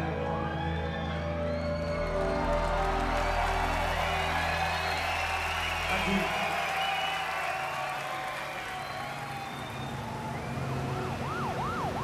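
Music from a live rock band holds sustained chords over a low bass, then fades out about halfway through. Near the end an emergency-vehicle siren starts wailing, its pitch sweeping quickly up and down.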